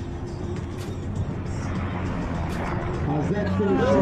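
Pacific Aerospace 750XL's PT6A turboprop engine and propeller running on the landing roll, a steady hum that grows gradually louder. Near the end, people's voices exclaim over it.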